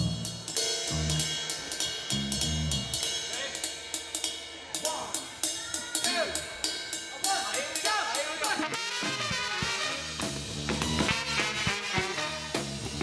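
A live ska band playing, led by a drum-kit beat with steady hi-hat and snare strokes. Bass notes sound in the first few seconds, and more instruments fill in near the end.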